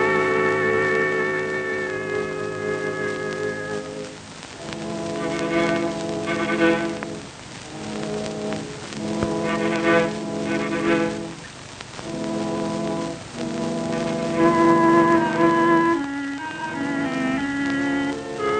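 Orchestral film score: held brass-led chords in swelling phrases a few seconds long, with brief dips between them.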